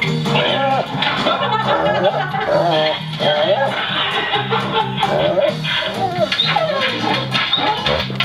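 Music with a steady, repeating bass line, with voices mixed in.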